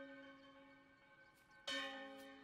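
A bell-like note from the anime's soundtrack, struck once and ringing faintly as it dies away, then struck again near the end.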